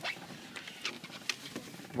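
Faint rustling with a few scattered light clicks: handling noise from a phone's microphone brushing against shirt fabric.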